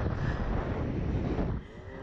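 Wind buffeting the microphone of a camera mounted on a Slingshot reverse-bungee ride's capsule as it hurtles through the air, a loud low rumble that falls away sharply near the end.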